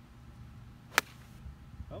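A golf iron striking a ball off turf: one sharp, crisp click about halfway through.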